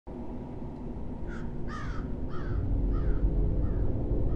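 A crow cawing: a string of short caws with a falling pitch, starting just over a second in, each fainter than the one before, over a low drone that swells.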